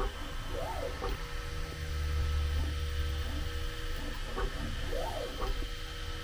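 Bambu Lab P1P 3D printer printing its K-value calibration lines: the stepper motors whine, rising and falling in pitch as the toolhead speeds up and slows down along a line, over a steady low hum.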